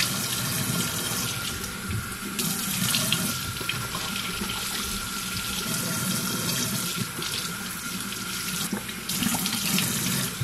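Bathroom sink tap running steadily while water is scooped and splashed onto the face by hand to rinse off a dried mud face mask, the splashing swelling every few seconds.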